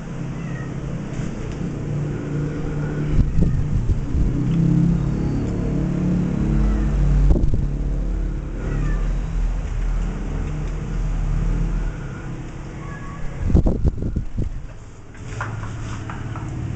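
Beagle puppy playing, giving short soft whines, over a steady low rumble. Sharp knocks come about three seconds in and as a quick cluster near the end, as the puppy scrambles on and off the wooden chair.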